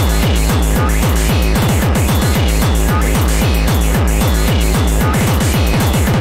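Hardcore techno (gabber): a fast, distorted kick drum, each kick dropping in pitch, under a harsh noisy layer, speeding into a quicker roll near the end.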